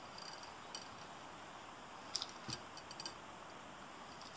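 Faint handling at a fly-tying vise: a few light ticks and rustles as the marabou and thread are wound around the hook.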